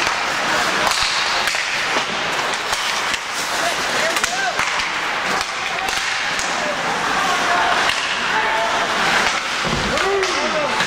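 Ice hockey play in progress: skate blades scraping the ice, with sticks and puck clacking in repeated sharp knocks, and voices shouting over it.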